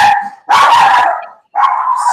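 A pet dog barking loudly, a few barks in quick succession.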